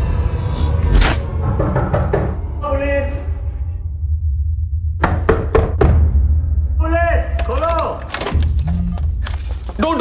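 Film-trailer sound mix: a steady deep rumble of dramatic score, struck through by several sharp impact hits in the second half, with wordless cries and shouts of voices.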